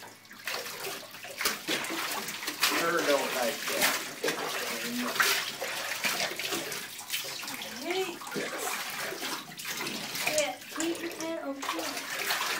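Water splashing and sloshing in a bathtub as a dog is washed and rinsed by hand, with frequent small irregular splashes.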